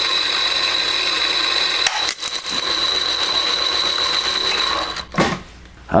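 Worn bimetal hole saw spinning in reverse, scraping through the bottom of a Pyrex dish in a silicon carbide and water slurry: metal on glass, a steady gritty grinding with a high whine. It falters briefly about two seconds in and stops about five seconds in.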